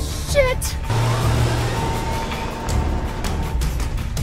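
Soundtrack music over a car engine pulling away and accelerating, with a short falling vocal cry about half a second in.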